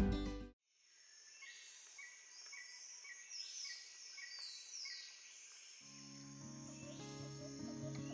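A chiming intro jingle ends in the first half second. After a short gap, faint birds chirp with short repeated notes and quick falling whistles. About six seconds in, soft background music with sustained low notes fades in under them.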